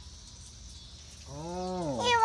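Quiet outdoor background, then about a second and a half in a person's single drawn-out wordless vocal sound, its pitch rising then falling, lasting under a second.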